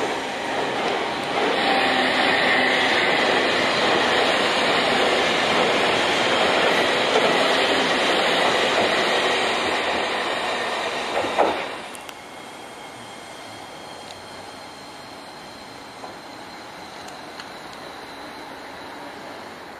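A Chikuho Electric Railroad 5000-series low-floor tram (Alna Little Dancer Ua) running past close by, its wheels loud on the rails with a thin high squeal a couple of seconds in. A sharp knock comes just before the noise cuts off about 12 seconds in, then a much quieter steady rumble as a second tram of the same type approaches.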